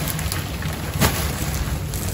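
Woven plastic sack full of potatoes rustling and crinkling as it is gripped and shifted, with one sharp crackle about a second in, over a steady low rumble and hiss.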